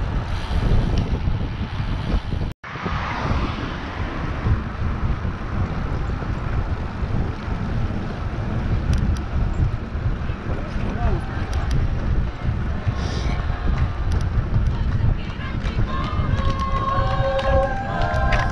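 Wind rushing over the microphone of a camera riding on a road bike at speed, with tyre noise on asphalt; the sound cuts out for an instant about two and a half seconds in. Near the end, people at the roadside start cheering.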